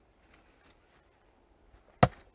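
Near silence, with a few faint, soft rustles.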